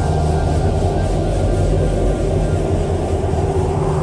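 A loud, steady low rumble with a held drone over it.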